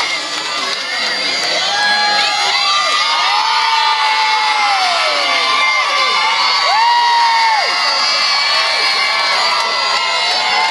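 Crowd of schoolchildren cheering and screaming, many high voices shouting at once, with several long drawn-out shouts standing out above the din.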